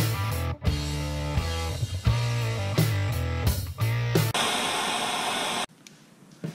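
Guitar-led background music with bass and drums, which stops about four seconds in. A second or so of steady hiss-like noise follows.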